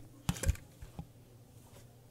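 Handling noise: a few sharp clicks and knocks as a hand handles the camera and gear, two louder ones close together just after the start, then two faint ticks about a second in.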